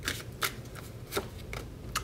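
A tarot deck being shuffled by hand: soft sliding of cards with about four sharp card snaps spaced through it.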